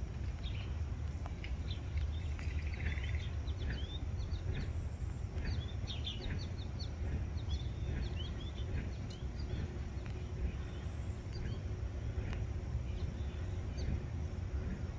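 Small birds at a seed feeder chirping, many short quick calls that are busiest in the first half, over a steady low rumble.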